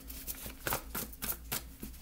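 A stack of index cards being shuffled by hand: a handful of irregular, quick papery slaps and rustles as the cards are cut and riffled together.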